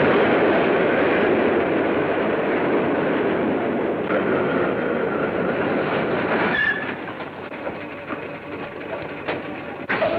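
Elevated train running past the platform, a loud steady rumble with wheel clatter. About two-thirds of the way in there is a brief squeal and the sound drops away, leaving quieter rumbling broken by scattered clicks and knocks as the train comes to a stand.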